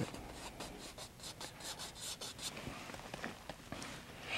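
Bristle paintbrush scrubbing and stroking titanium white oil paint into canvas: a quick run of short, faint scratchy strokes over the first couple of seconds, then softer rubbing.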